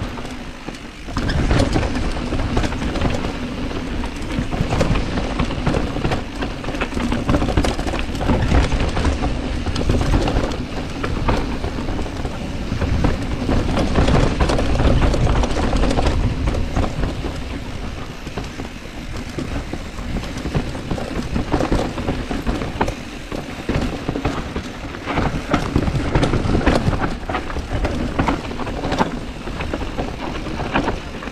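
Specialized Status mountain bike riding down a rough dirt trail: steady rumbling noise from the knobby tyres over gravel and roots, with the bike rattling and wind buffeting the camera microphone.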